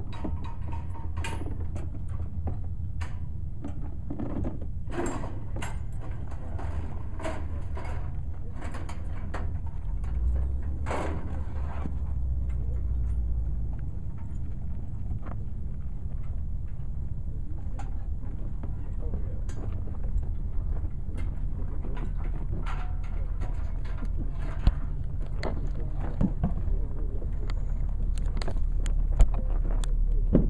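Scattered clicks and clanks of steel hitch parts being handled (a safety chain, pins and a long hitch bar), over a steady low rumble.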